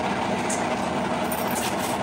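A heavy truck's engine running steadily: an even, low rumble.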